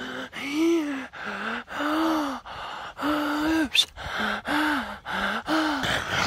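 A man's voice making a string of wordless drawn-out vocal sounds, about seven in a row, going back and forth between a higher and a lower pitch with short breaths between them.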